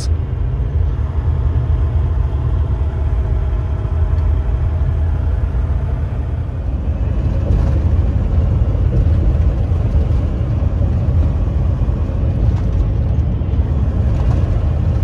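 Steady low rumble of a semi truck driving, engine and road noise heard from inside the cab.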